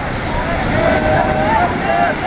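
Men's voices shouting and calling out over steady surf and wind, with one long drawn-out call in the middle.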